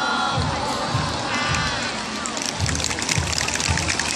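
Audience clapping, thickening into steady applause from about halfway through, over background music with a regular low beat about twice a second.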